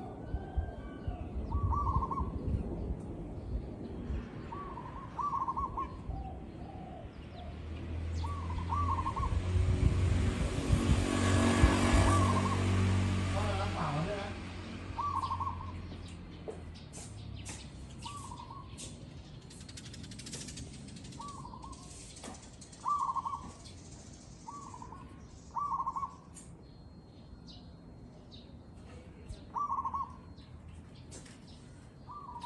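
Zebra dove cooing: short, trilled coos repeated every one to three seconds. A low rumble swells up and fades away in the middle, loudest about ten to twelve seconds in.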